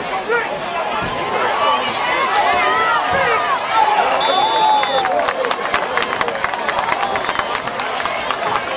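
Football crowd and sideline yelling and cheering during a running play. A referee's whistle blows briefly about four seconds in, and clapping follows.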